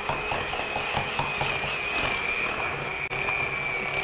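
Electric hand mixer running steadily with a high whine as it creams butter and sugar in a glass bowl.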